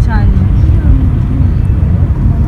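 Steady low rumble of a moving car heard from inside the cabin: road and engine noise.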